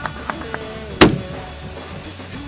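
A single extreme-long-range rifle shot about a second in: one sharp report, much the loudest sound, with a brief low rumble trailing after it. Rock music plays underneath.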